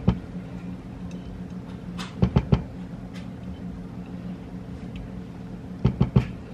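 Red plastic spoon knocking against a salsa jar and the Instant Pot's inner pot as the last salsa is scraped out: a knock at the start, a quick run of three about two and a half seconds in, and another near the end. A steady low hum runs underneath.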